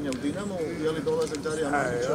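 Speech: a voice talking.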